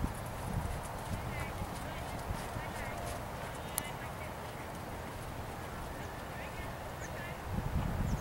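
Horse trotting on sand arena footing: soft, muffled hoofbeats over a steady low rumble, with short high chirps now and then.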